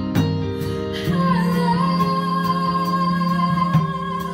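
Live band playing a pop ballad: a female lead singer holds one long note from about a second in, over drum kit, bass and guitar. The drums keep time with regular cymbal strokes, with a strong drum hit near the start and another near the end.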